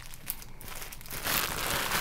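Thin plastic waterproof bag crinkling as it is handled.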